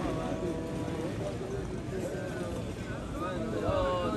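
Men's voices praying aloud, a chant-like voice holding a steady note near the start and voices rising and falling near the end.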